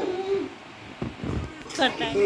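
A baby's short hooting "ooh" call, falling in pitch, then a few soft low thumps and a brief higher-pitched child's cry near the end.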